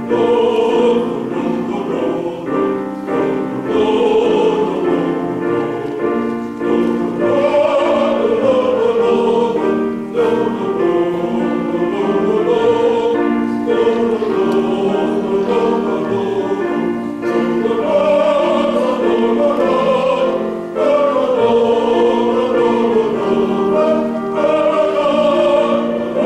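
Men's choir singing a hymn in harmony, accompanied by a grand piano. It goes in phrases of a few seconds, with short breaks for breath between them.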